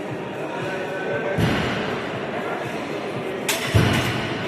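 Background music and voices in a large hall, then near the end two sharp knocks, the second the loudest, as the loaded barbell is set back into the bench press rack.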